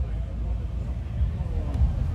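Indistinct voices of people talking in the background over a constant low rumble.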